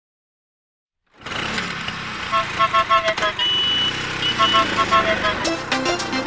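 Silence for about a second, then a scooter engine starts and keeps running with a steady hum, under a cheerful music intro of short repeated plinking notes.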